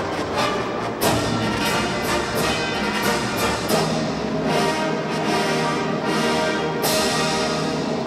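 Orchestral soundtrack music led by brass, horns and trombones playing sustained chords punctuated by sharp accented hits, with a strong accent about a second in and another near the end.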